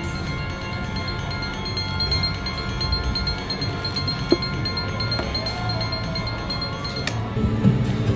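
Poker machine win-tally chimes: a steady ringing jingle of held high tones while the win meter counts up the collected cash prizes during the free games. A sharp click sounds about four seconds in and another near the end.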